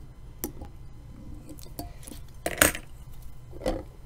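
Small metal fly-tying tools clinking and tapping as they are handled: a few separate clicks, the loudest about two and a half seconds in.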